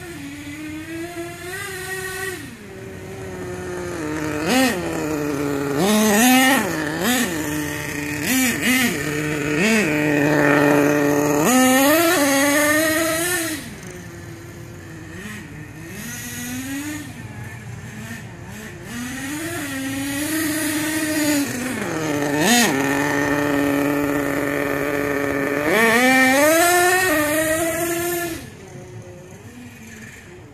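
HPI Savage 25 nitro RC monster truck's small two-stroke glow engine revving up and down over and over as it is driven, its pitch climbing and falling with each burst of throttle. It runs loud for long stretches, then drops back to a lower, quieter note about halfway through and again near the end.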